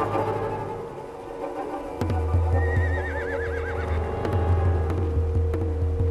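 Sustained film-score music with a low drone, and a horse whinnying once in the middle, a shaking call that falls in pitch.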